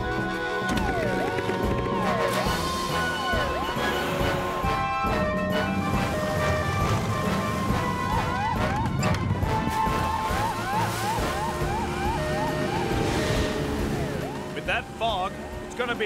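Upbeat cartoon action music with quick rising synth runs, laid over the rumble of a rescue boat's engine as it launches down a ramp into the sea.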